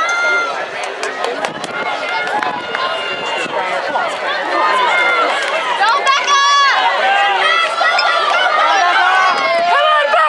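A crowd of spectators shouting and cheering runners on in a 400 m race, many voices overlapping. The cheering grows louder about halfway through as the runners come down the home straight.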